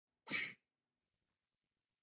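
A single short, sharp burst of breathy vocal sound, lasting about a third of a second and coming about a quarter second in.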